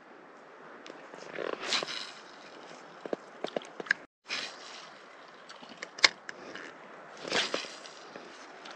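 Spinning rod and reel being cast from the shore: three short swishes from the rod and line, with scattered sharp clicks from the reel.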